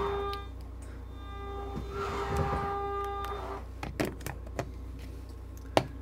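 Electric slide-room motor of a motorhome running with a steady whine, in a short run at the start and a longer one of about two seconds, as the slide is driven in or out from the remote. A few sharp clicks follow near the end.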